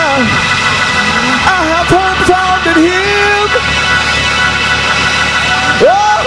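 Worship music: sustained keyboard chords held steadily, with a man's voice singing a short unworded phrase in the middle.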